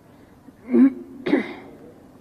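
A woman clearing her throat twice at a microphone: two short rasps about half a second apart.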